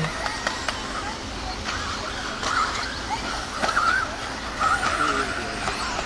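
Electric 1/10-scale 4WD off-road buggies racing on a dirt track, their brushless motors whining up and down in pitch as they accelerate and brake through the jumps, with a few sharp clicks from the cars.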